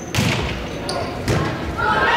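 A volleyball struck hard on a serve, a sharp slap in a large gym, followed about a second later by a second hit as it is played on the other side of the net. Players start shouting near the end.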